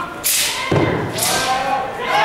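Footwork on the carpeted competition floor during a Nanquan (southern fist) routine: a heavy thud from a stomp a little under a second in, with sharp slaps just before and after it. A voice calls out through the second half.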